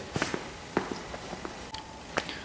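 A few faint, scattered taps and clicks, with a faint short steady tone near the end.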